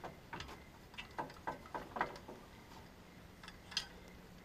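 Faint, irregular metal clicks and taps, about three a second, as the sawmill's swing-out log-loader arm, with its hand winch, is turned on its pivot.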